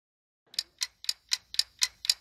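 Countdown-timer sound effect: a clock ticking about four times a second, starting about half a second in out of dead silence.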